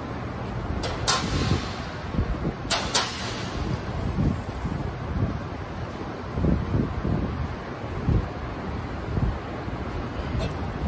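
Metal clinks of a wrench working the last mounting bolt off a diesel engine's turbocharger: one sharp click about a second in and two more close together near three seconds, over steady shop background noise.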